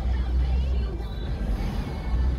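Steady low rumble of a car driving on a town street, heard from inside the cabin, with music playing faintly over it.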